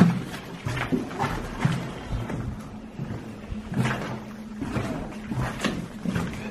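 A low, steady, eerie background music drone, with irregular footsteps crunching over rubble and debris on the floor.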